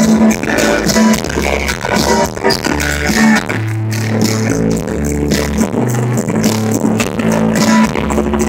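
Live rock band playing an instrumental stretch with no singing, heard from the audience: drums keeping a steady beat over a bass guitar moving between held low notes, with acoustic guitar and keyboards.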